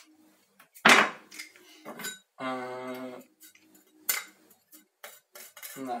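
Metal garlic press and knife clacking and clicking against each other over a wooden cutting board as pressed garlic is scraped off: one sharp clack about a second in, then scattered lighter clicks. A short steady hum sounds in the middle.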